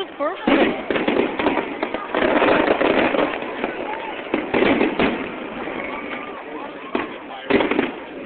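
Aerial fireworks shells bursting one after another in a string of sharp booms with crackle between them, two loud bursts coming close together near the end. Crowd voices chatter underneath.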